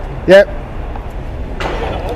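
Steady low rumble of urban road traffic, with a short rushing hiss near the end.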